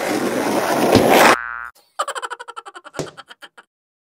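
Cartoon sound effects for a skateboarder's crash: a rising rush of noise that cuts off suddenly about a second and a half in, then a springy boing that wobbles in quick pulses and fades, with a knock about three seconds in.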